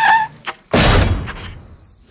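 Cartoon sound effects: a car's tyre squeal cuts off as it skids to a stop, then a sudden loud crash about two-thirds of a second in, fading away over about a second.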